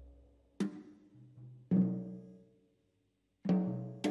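Slow, sparse live instrumental music from a quartet of double bass, piano, electric guitar and drums: separate struck notes and chords, about half a second in, near the middle and just before the end, each ringing out and fading, with a brief near-silent pause before the last.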